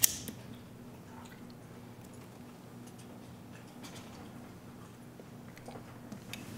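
Playback of a film's boom-mic production recording: quiet room tone with a low steady hum and a few faint small ticks and movements, production effects with no breathing or vocalizations in them. Playback starts with a click.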